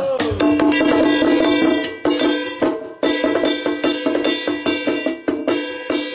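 Tujia folk percussion struck with sticks: a fast run of strikes with ringing metallic tones, playing an interlude just after a sung line trails off at the start.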